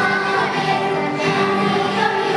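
A children's choir singing, with long held notes.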